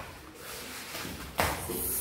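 Two barefoot wrestlers grappling on a rubber floor mat and tiles: bodies scuffling and rubbing, with one sharp thump about a second and a half in.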